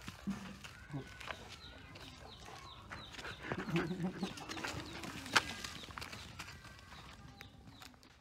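Repeated short, high bird chirps, each sliding down in pitch. A short low call sounds about halfway through, followed by a sharp tap.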